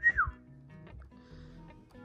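A short whistle right at the start, rising and then gliding down in pitch, followed by soft background music.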